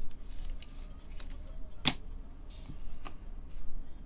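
Trading cards and clear plastic card holders being handled by gloved hands: light scrapes and small clicks, with one sharper click about two seconds in.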